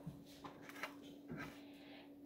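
Faint footsteps and clothing rustle as a person walks away across a kitchen, about four soft steps roughly half a second apart, over a steady low hum.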